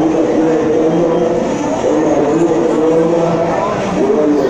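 Small motorcycle engine running steadily, a steady pitch with small rises, on the floor of a wooden wall-of-death drum.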